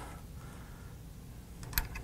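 Quiet handling of an antique repeating gun's steel action, with a few small metallic clicks near the end as the bolt and parts are worked.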